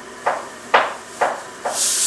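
Four light taps of a fingertip on a tablet's touchscreen, about two a second, the third the loudest.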